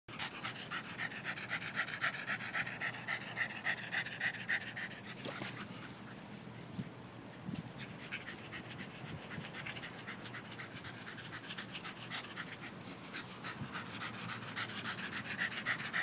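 West Highland white terrier panting hard in fast, even breaths, a sign of exhaustion after about twenty minutes of non-stop running. The panting is loud at first, fades in the middle and grows again near the end.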